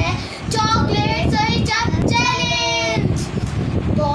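A girl singing a short phrase, ending on one long held note about two seconds in.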